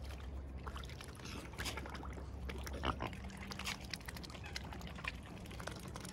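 Swans dabbling for food in shallow water: irregular small splashes, slurps and bill clicks as they sift among the reeds.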